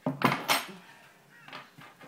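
Glass bottle and metal bar spoon set down on a table: two sharp clinks in quick succession, then a couple of lighter knocks as things are moved about.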